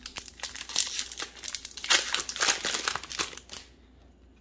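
A Magic: The Gathering booster pack's foil wrapper being opened by hand, a dense crinkling and crackling that stops shortly before the end.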